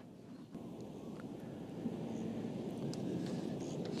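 Faint outdoor ambience: a steady low rumble of wind and background noise that gets louder about half a second in, with a few faint ticks.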